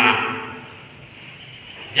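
A man's voice through a public-address system says one short word right at the start, and it fades out in the reverberation of a large hall. The rest is a pause with only faint room tone.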